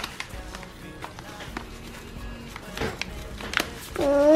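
Quiet background music with a few faint held notes, under scattered soft crinkles and taps from a plastic bag of cereal powder being shaken over a glass.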